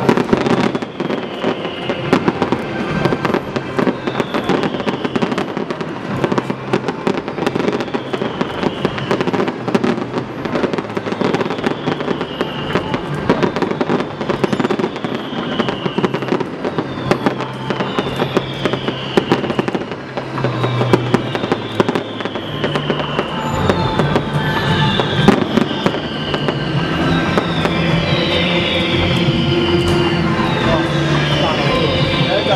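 Aerial fireworks bursting in a continuous run of bangs and crackles, with music playing alongside. A falling high tone recurs about every two seconds and comes more often near the end.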